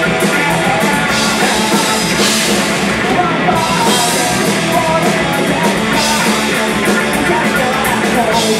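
Live punk rock band playing a song: distorted electric guitars, bass and drum kit, with a male lead singer and crashing cymbals.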